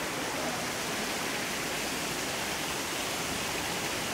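Steady rushing of a small waterfall, water running down over a rock slab.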